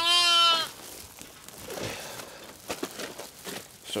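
A sheep bleats once, a single loud call of about half a second with a slightly wavering pitch. After it come faint rustles of straw and a plastic feed bag as a newborn lamb is rubbed down.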